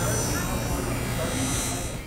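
Skate-sharpening machine's grinding wheel running against a hockey skate's steel blade: a steady, high grinding hiss over the machine's motor hum.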